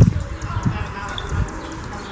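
Footsteps of someone walking with the camera: dull, low thumps about one every 0.7 s, with faint voices in the background.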